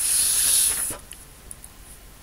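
One hard puff of breath blown through a drinking straw, a hissing rush of air lasting about a second. It is straw blow painting: the air pushes drops of watery watercolour across the paper into streaks.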